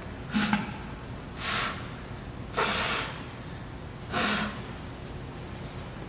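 Someone blowing at a candle flame to put it out: four short breathy puffs about a second apart, the third the longest. It takes several blows because the oxygen-fed flame was burning so hot.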